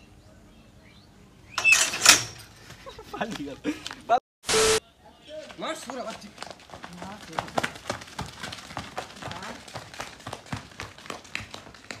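Several young men shouting and yelling excitedly, with a loud cry about two seconds in. A short burst of hiss cuts in at about four and a half seconds.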